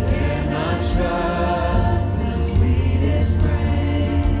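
Live church worship band playing a hymn: a woman's lead vocal with more voices singing along, over acoustic guitar, electric guitar and bass, continuous and steady.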